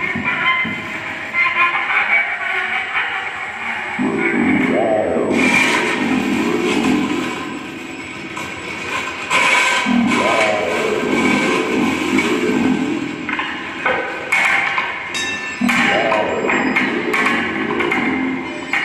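Improvised experimental music: sliding pitched tones swell and fall away three times, over scattered knocks and short ringing strikes.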